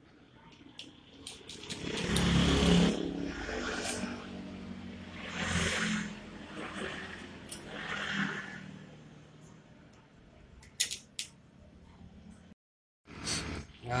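Metal suspension-clamp hardware for fibre-optic cable being handled and fitted onto a pole bracket by hand: scraping and clatter, with a few sharp clicks near the end. Behind it an engine runs, swelling louder several times.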